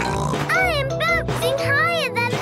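Light cartoon background music with a child character's voice giving three short cries that rise and fall in pitch, about half a second apart.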